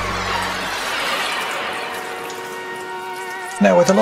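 Background music fading out over a tap running into a sink, as hands rinse small fabric doll clothes under the stream. A man's voice starts near the end.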